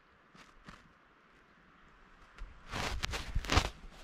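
A few irregular footsteps starting a little past halfway, after a near-silent first half with two faint ticks.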